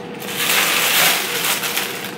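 Handling noise from a slow cooker's black inner cooking pot as it is lifted and handled: a rough rustling, scraping sound lasting about a second and a half.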